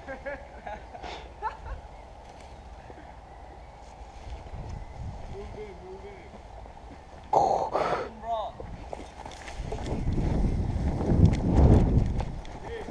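Outdoor noise on a handheld camera microphone, with a short burst of voices about seven seconds in and a low rumble building near the end as the camera is swung about.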